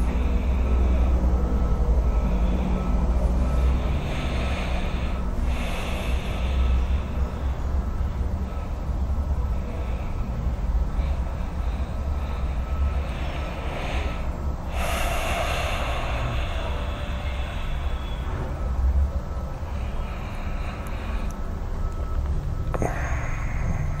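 Steady low background rumble, with a few louder breathy swells from a person's breathing, one about four seconds in and one about halfway through.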